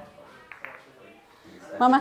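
Mostly quiet room with faint voices, then a voice calls "Mama" near the end.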